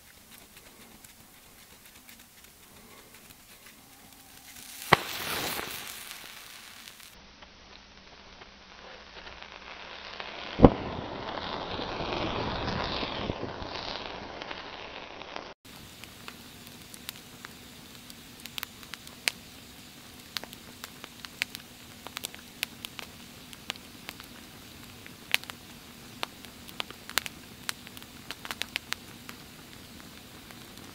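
A campfire of dry sticks burning, crackling with sharp irregular pops several times a second. Before it settles, two louder snaps stand out, about five and ten seconds in, each followed by a rushing noise.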